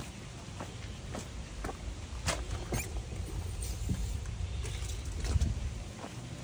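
Footsteps on concrete, a short tap roughly every half second, over a steady low rumble.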